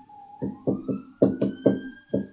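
Pen tip tapping against a tablet writing surface while handwriting an equation: about seven quick taps, irregularly spaced. A faint rising tone runs beneath them.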